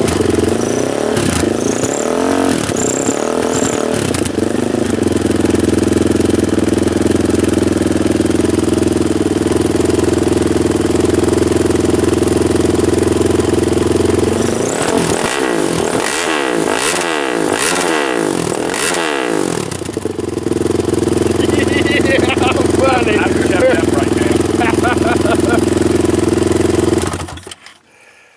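Honda TRX450R's single-cylinder four-stroke engine, through a DASA Racing shorty exhaust, idling loud and steady. It is blipped in about four quick revs about halfway through, settles back to idle, and cuts off about a second before the end.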